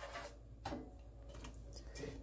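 Faint, sparse ticks of a wire whisk against a metal pot as a coconut-milk mixture is stirred.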